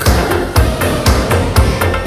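Italo-disco synth-pop track in a short instrumental passage: a steady beat of about four hits a second over a pulsing bass line, with no singing.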